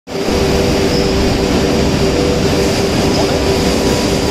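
Loud, steady machinery drone with a few fixed hum tones running through it, under faint background voices.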